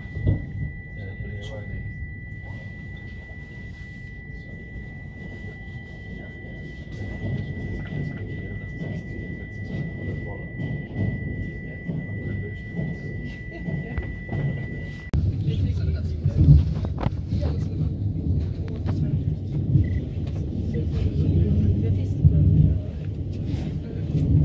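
Inside an Alstom/Siemens-built electric commuter train running along the track: a low rumble of wheels on rail with scattered clicks over joints and points. A thin steady high tone runs through the first part and stops about two-thirds through, after which the rumble grows louder.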